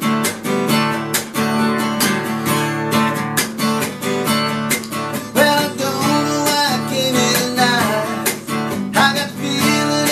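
Acoustic guitar, a Taylor tuned to drop D with the high E string lowered a whole step, strummed in a steady rhythm. A man's singing voice joins about halfway through.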